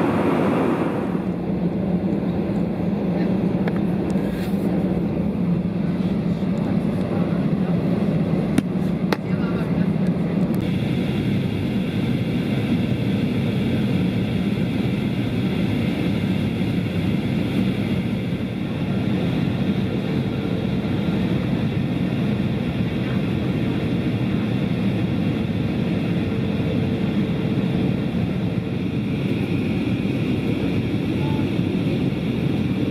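Steady cabin noise of an Airbus A320 airliner in flight: the constant rush of airflow and engines heard from a passenger seat. Its tone shifts about ten seconds in, and a faint steady hum joins it later on.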